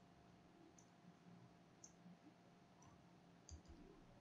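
Faint, separate clicks of a computer keyboard and mouse as text is typed into a field, ending in two close clicks near the end.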